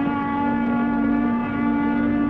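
A sustained low chord of steady, horn-like tones with many overtones, held without a break while a few of the upper notes shift slightly.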